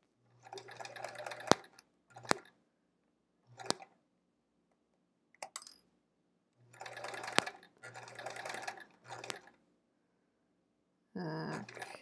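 Sewing machine stitching in short bursts, starting and stopping under the foot pedal about seven times with silent pauses between. Several of the runs end in a sharp click.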